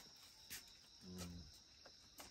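Near silence, with crickets chirping faintly and steadily in the night background.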